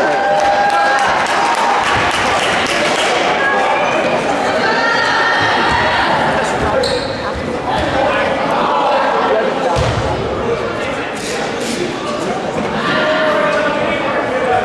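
A basketball bouncing on a hardwood gym floor amid voices calling out and cheering, all echoing in a large gymnasium.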